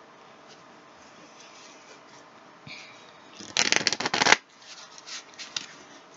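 A deck of tarot cards being shuffled by hand: quiet at first, then a quick, dense rustle of cards lasting under a second about three and a half seconds in, followed by a few short card clicks and slaps.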